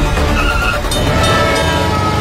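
Soundtrack music mixed with the sound of a car driving fast.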